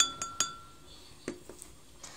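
A pencil clinking against a glass measuring cup of water: three quick taps in the first half-second, the first leaving a brief glassy ring, then two softer knocks about a second later.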